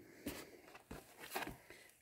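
Faint handling noise of a plastic welding helmet: several light clicks and soft rustles as it is turned over and fingered.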